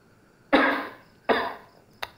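An elderly man coughing twice, the first cough about half a second in and the second under a second later; the coughs of an old man who is ill.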